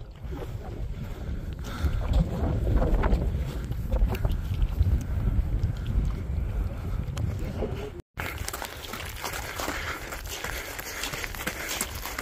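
Wind rumbling on a phone microphone during a climb, then, after the sound cuts out briefly about two-thirds of the way through, footsteps crunching on loose rocky ground as many short clicks.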